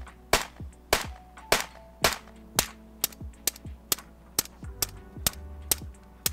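A 300 AAC Blackout AR-style rifle firing a string of about fourteen shots, roughly two a second at first and coming faster in the second half.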